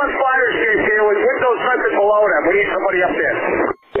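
A man's voice over a two-way radio, sounding thin and narrow: fireground radio traffic from a fire officer. It breaks off briefly shortly before the end.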